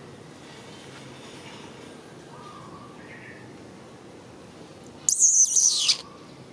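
Faint bird chirps over a steady outdoor background. About five seconds in, a loud, shrill high-pitched sound lasts under a second and slides down in pitch as it ends.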